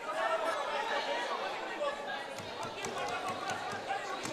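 Many voices talking over one another in a large chamber, an unsettled hubbub of members rather than one clear speaker, with a few sharp knocks in the second half.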